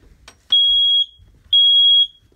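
Household smoke alarm sounding, two high-pitched beeps about half a second long, a second apart. It has been set off by smoke from papers and sage burning in a cauldron.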